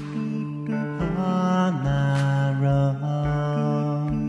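Looped music from a Boss RC-505 looper: sustained, layered harmonies over a low thump about every half second, with a sharp hit at the start and another about two seconds in.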